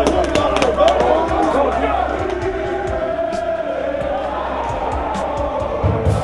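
A group of football players shouting and hollering to each other in a stadium tunnel, over music, with scattered sharp claps or knocks. The shouting is heaviest in the first couple of seconds, then gives way to steadier music.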